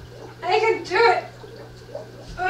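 Two short, high-pitched vocal sounds about half a second apart, each rising and then falling in pitch, over a steady low hum.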